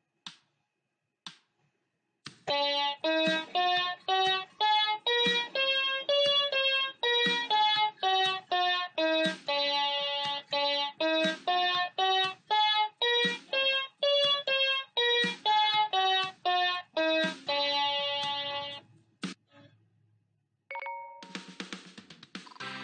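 Electronic keyboard's piano voice playing a one-octave D major scale with the right hand, note by note, at about two notes a second, running up and back down the scale. A short held electronic tone sounds near the end.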